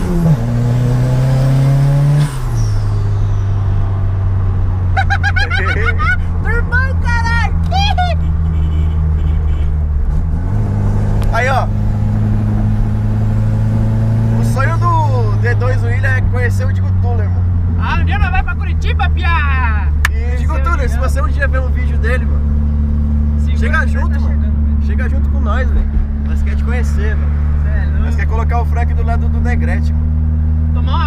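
Engine of a modified car heard from inside the cabin while driving: a steady low drone that drops in pitch about two seconds in, as with a gear change, rises a little around ten seconds in, then holds steady.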